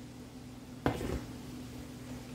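A single sharp knock of kitchenware a little before halfway through, with a short tail, over a steady low hum.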